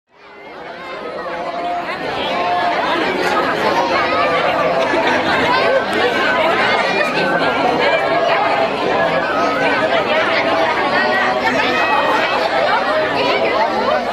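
A crowd chattering: many overlapping voices talking at once, fading in over the first two seconds and then holding steady.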